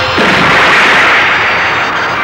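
A sudden explosion-like boom sound effect that hits just after the start and dies away over about a second and a half, over the theme music.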